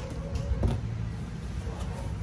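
Scissors cutting through the packing tape on a cardboard box, then the cardboard flaps pulled open, giving a few short clicks and rustles, the sharpest about half a second in. A steady low rumble runs underneath.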